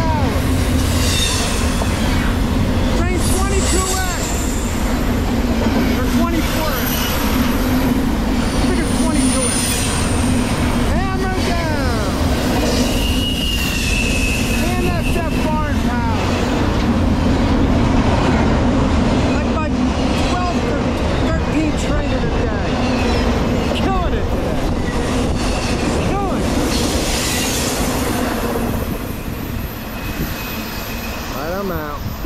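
Double-stack intermodal freight cars rolling past close by: a steady loud rumble of steel wheels on rail with clatter and intermittent high wheel squeals, one longer squeal about thirteen seconds in. The sound drops near the end as the last car goes by.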